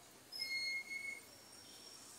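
A faint, high, steady whistled note, held for just under a second, over quiet outdoor background noise.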